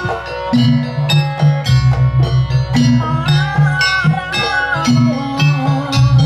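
Live Banyuwangi gamelan ensemble playing: bronze keyed metallophones ringing in struck notes over repeated low drum strokes, with a wavering melody line above them in the middle.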